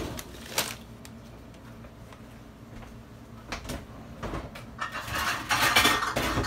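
A few light knocks of cutlery being set down on a metal baking sheet, then about a second of a plastic snack bag crinkling near the end.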